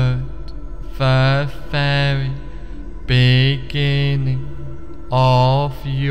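A man's voice chanting a drawn-out two-syllable sound, each pair repeated about every two seconds, three times, over a low steady hum.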